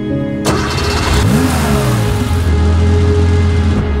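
Air-cooled Porsche 911 flat-six engine starting suddenly about half a second in, then revved so its pitch rises and falls several times, over background music.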